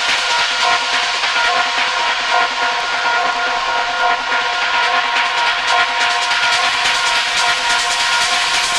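Hard techno track in a breakdown without the kick drum: a steady synth drone of several held tones over a thick hiss of noise.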